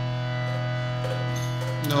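Harmonium holding a steady drone chord, its reeds sounding several sustained notes without change.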